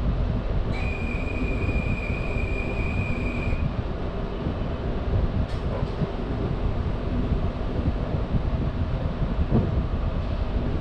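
NS VIRM double-deck electric train standing at a platform, heard from its cab: a steady low rumble from its onboard equipment. A steady high tone sounds for about three seconds near the start, and a single sharp click comes about halfway through.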